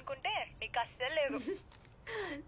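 Speech only: a woman talking on a mobile phone, in short, high-pitched phrases.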